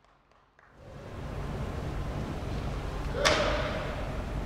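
Low hum of a large sumo hall, fading in after about a second of silence, with one sharp slap about three seconds in that echoes briefly through the hall.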